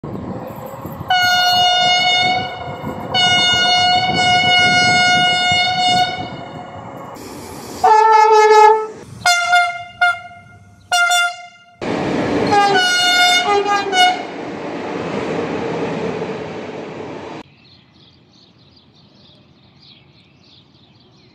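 Train horns sounding in a string of separate blasts of differing pitch: two long blasts, then a lower two-tone blast and several short ones, then another horn over rolling train noise. The train noise cuts off abruptly near the end, leaving faint birdsong.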